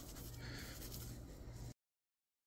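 Faint rubbing of wet, dish-soaped shirt fabric scrubbed against itself by hand. It cuts off abruptly shortly before the end, where the sound track goes dead.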